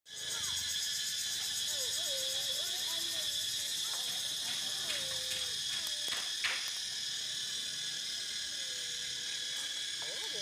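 Steady, dense high-pitched insect chorus droning without a break, with a few sharp light clicks around the middle.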